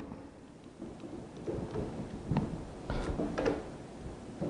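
Clamps being fitted and tightened to hold a wooden board to a workbench: faint, irregular knocks, scrapes and a few sharp clicks.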